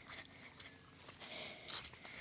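Faint outdoor ambience: a steady high insect drone with a few soft footsteps on a wet dirt trail, one a little sharper near the end.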